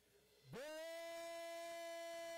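A man's voice singing a long wordless held note. It breaks off briefly, then about half a second in slides up into a new pitch and holds it steady without vibrato.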